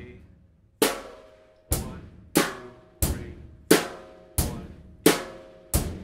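Drum kit playing the most basic rock beat slowly: the closed hi-hat struck on every count together with the bass drum on one and three and the snare on two and four. Eight evenly spaced hits, about one and a half a second.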